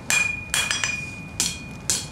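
Blacksmith's hand hammer striking metal at about two blows a second, each blow sharp with a short metallic ring that carries on between strikes.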